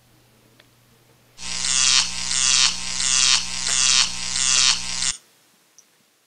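Electrical buzzing sound effect for an on-screen lightning bolt: a steady low hum under a crackling buzz that pulses about one and a half times a second. It starts about a second and a half in and cuts off suddenly about five seconds in.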